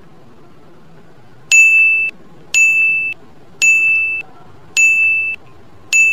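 Quiz countdown timer sound effect: a series of electronic ding beeps about a second apart, each a clear high tone lasting about half a second, the last starting near the end.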